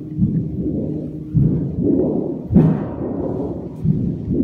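Feedback from a contact microphone on a metal cistern with an amplifier beneath it: low, booming resonant tones that keep swelling and pulsing about once or twice a second. About two and a half seconds in comes a sharper, brighter metallic hit that rings on.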